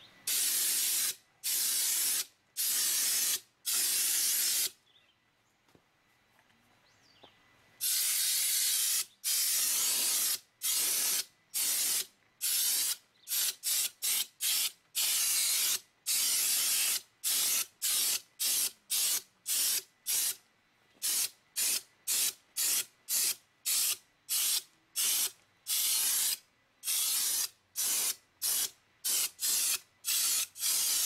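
Homemade venturi spray gun, a compressed-air blow gun drawing paint up a pen tube from a plastic cup, fired in repeated bursts of loud air hiss as it sprays. It starts with about four bursts of a second each, falls quiet for about three seconds, then goes on in many shorter bursts that speed up to about two a second.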